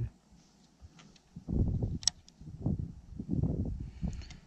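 Muffled low rumbling on the camera's microphone in three bursts from about a second and a half in, handling noise as the fishing rod is picked up, with one sharp click about two seconds in.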